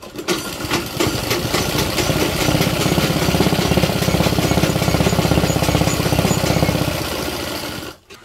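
Domestic sewing machine running fast, its needle stitching a seam through cotton fabric with a rapid even clatter. It picks up speed over the first couple of seconds, runs steadily, then slows and stops just before the end.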